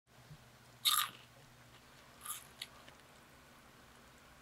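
Close-miked eating sounds: a loud, short crunchy bite about a second in, a softer one about a second later and a small click just after. Under them runs the faint, steady low hum of an electric fan.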